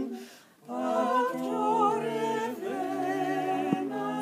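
A mixed quintet of voices singing a lullaby in Esperanto in close harmony, unaccompanied. The voices stop for a breath just after the start and come back in together under a second later.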